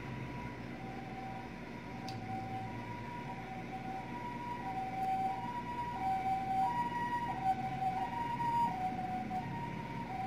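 A two-tone siren alternating between a lower and a higher pitch in a steady hi-lo pattern. It grows louder toward the middle and eases a little near the end.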